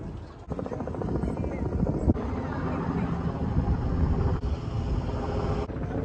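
Wind buffeting the microphone: a heavy, fluttering rumble that starts about half a second in and holds, with faint voices underneath.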